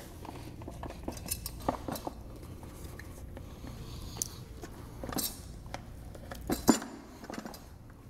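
Light clicks and knocks of plastic parts and cable being handled as a grinder pump's black plastic top housing is lowered into place, with one louder knock near the end. A steady low hum runs underneath.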